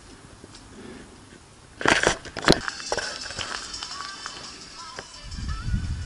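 Bicycles being handled as riders set off: a couple of sharp clicks and clatters about two seconds in, then lighter scattered clicks and a low rumble of movement near the end, with faint thin wavering tones.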